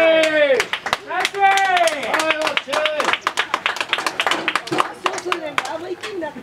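Baseball bench cheering: voices shouting drawn-out calls while hands clap quickly and repeatedly through most of the stretch.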